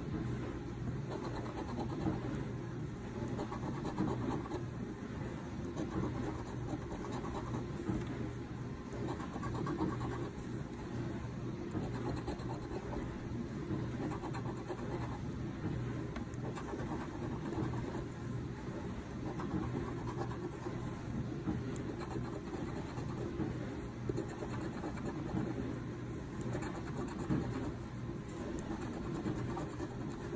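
A coin scraping the coating off a scratch-off lottery ticket, a continuous rough scratching.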